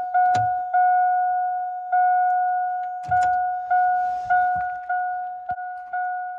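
Warning chime of a 2001 GM Duramax pickup, sounding with the ignition on and the driver's door open: a single ding repeated about every 0.6 s, each ring fading before the next, with a few gaps. A couple of soft knocks come about half a second in and again about three seconds in.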